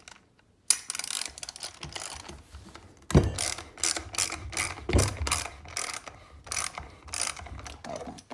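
Ratchet socket wrench on a 19 mm nut, clicking in repeated back-and-forth strokes as the nut holding the buttstock to the buffer tube is loosened; the clicking starts about a second in.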